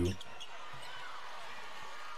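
Women's college basketball game sound playing low: steady arena crowd noise with a ball being dribbled on the hardwood court.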